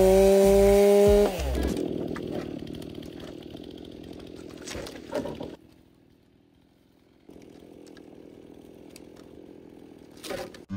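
Chainsaw running at full throttle through a log, held at a steady high pitch; about a second in the throttle is released and the engine winds down and fades. A few knocks sound near five seconds.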